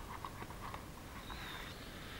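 Faint rustling and crinkling of paper as a small die-cut patterned-paper envelope is handled and folded by hand: soft ticks at first, then a longer rustle starting a little over halfway in.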